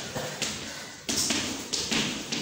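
Chalk writing on a blackboard: a handful of sharp taps and short scratchy strokes as words are written out.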